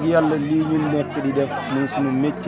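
Speech: a man talking, with other voices chattering in the background.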